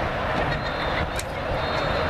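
Steady outdoor noise at a youth football field, with faint distant voices from the players and sidelines.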